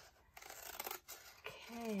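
Large scissors cutting through the edge of a diamond painting canvas: one quiet cut closing with a snip about a second in.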